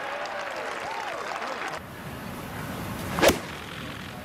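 Gallery cheering that cuts off abruptly a little under two seconds in. About three seconds in, a single sharp strike as a golf club hits the ball on a full swing.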